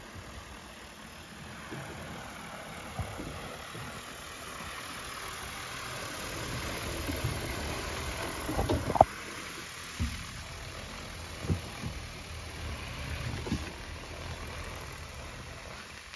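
DJI Agras T20P agricultural spray drone's rotors whirring as it flies over the field, growing louder as it comes close about eight seconds in, then easing off. Several low thumps break through, the loudest about nine seconds in.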